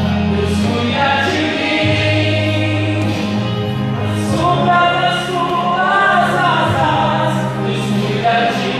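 A man singing a gospel worship song into a handheld microphone, amplified through a church sound system, over an accompaniment of long-held low notes that change every second or two.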